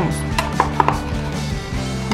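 Scissors snipping through thin clear PET bottle plastic: a quick run of short, sharp snips in the first second or so.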